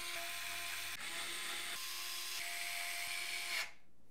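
Small electric screwdriver driving the motherboard mounting screws into the case standoffs, its motor running with a faint steady whine in a few short spells and cutting off shortly before the end.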